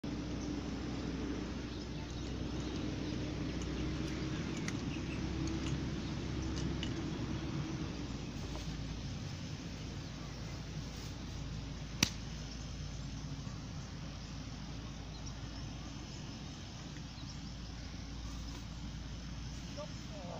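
A single sharp click of a golf iron striking the ball, a little past halfway through, over steady outdoor background noise.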